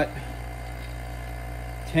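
Electric vacuum pump running with a steady low hum, pulling vacuum on a 4L60E valve body circuit during a vacuum test.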